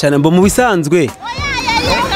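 A man's voice for about a second, then high children's voices calling and shouting at play, wavering in pitch.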